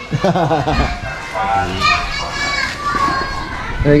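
Background chatter of several voices, some of them high-pitched and child-like, talking and calling out.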